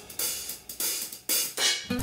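Background music in a sparse passage of mostly hi-hat and cymbal strokes, with little bass.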